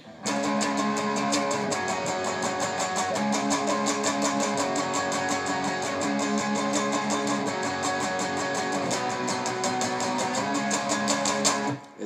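Electric guitar playing a power-chord riff (riff B of the song, in the raised key) with fast, even picking.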